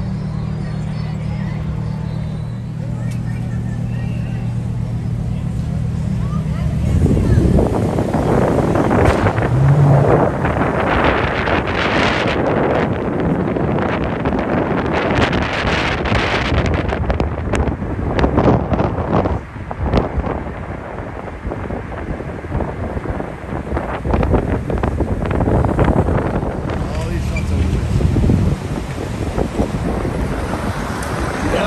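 A car idling at a stop with a steady low hum. About seven seconds in, as it drives off, gusty wind buffeting the microphone takes over, rising and falling for the rest of the time.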